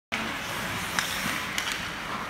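Ice hockey play in an indoor rink: a steady hiss of rink noise with a sharp clack of stick and puck about a second in and two more near the end.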